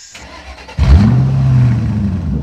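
A car engine starting about a second in: a sudden loud catch with a quick rise in pitch, then running steadily.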